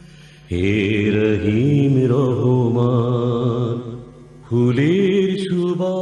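A man's voice chanting in long, drawn-out notes that waver and glide in pitch, in the manner of an Arabic devotional chant. It comes in two phrases, the first starting about half a second in and the second about four and a half seconds in.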